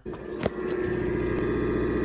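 Samsung RF267 refrigerator making a loud, constant buzz, with a short click about half a second in. The owner puts the noise down to its cooling coils being frozen over.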